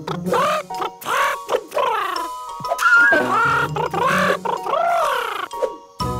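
Children's cartoon song in a wordless break between sung lines: a lead line of short phrases that each rise and fall, about two a second, over held chords.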